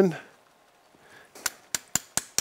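Surgical mallet tapping the anchor inserter, three quick sharp strikes starting about one and a half seconds in, driving a 2.6 mm knotless FiberTak soft anchor into the bone of the greater trochanter.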